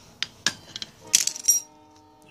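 A steel socket and tools being handled against metal: a few light clicks, then a quick cluster of ringing metallic clinks about a second in.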